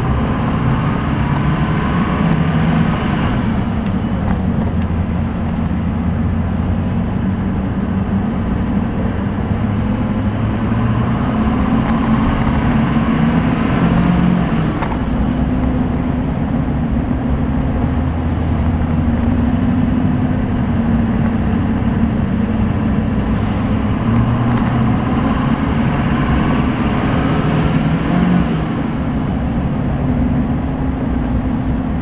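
LLY Duramax 6.6 L V8 turbodiesel running under way, heard from inside the cab, its intake resonator removed so the turbo is louder. A turbo whistle climbs in pitch three times over a steady engine rumble as the truck accelerates.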